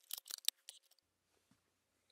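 A quick, faint run of small hard-plastic clicks and taps in about the first second as a toy Laser Blade prop is handled on its plastic display stands.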